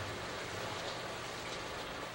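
Frigidaire dishwasher running mid-cycle: a steady wash of spraying water over a low, even hum.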